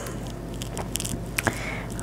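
Faint scraping and a few light clicks of a spatula spreading thick barbecue sauce over a meatloaf in a cast iron skillet.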